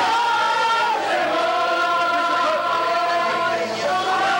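Several voices singing together in long, held notes.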